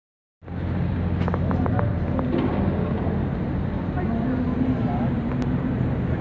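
Big diesel truck engine idling with a steady low hum, and a few light clicks in the first two seconds.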